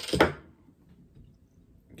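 A short rattle and a sharp knock of a glass beer bottle and a glass being handled on a tabletop, right at the start. After that the room is quiet.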